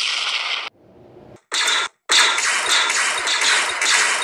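Explosion sound effect at the start, trailing off into a low rumble, then a short burst and, from about two seconds in, a rapid, continuous volley of blaster-fire sound effects for a battle.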